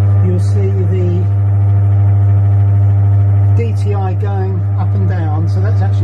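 Milling machine spindle motor running at a steady speed with a loud, deep, even hum.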